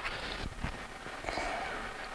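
Faint scraping of a plastic credit card spreading Bondo body filler over a crack in a 3D-printed plastic helmet, with a few light ticks about half a second in.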